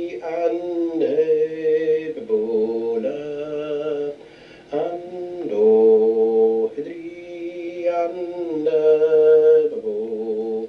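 A man singing the first line of a piobaireachd ground in canntaireachd, the sung vocables of Highland bagpipe music. He holds notes of about a second, moving from pitch to pitch with short syllable breaks, and pauses for breath about four seconds in.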